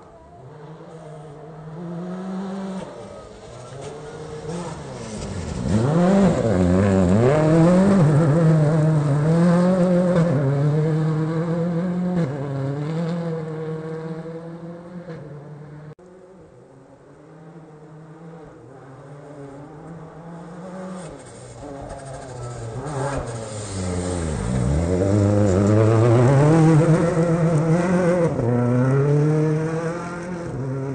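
Rally car engine at high revs on a gravel stage. The revs dip sharply and then climb again in steps, like gear changes, and stay loud for several seconds. About halfway through, the sound cuts off abruptly, and a second loud pass builds up the same way.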